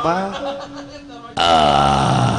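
A man's puppet-character voice in a wayang golek performance: short guttural vocal sounds, then a sudden loud, drawn-out cry a little past halfway that slides down in pitch.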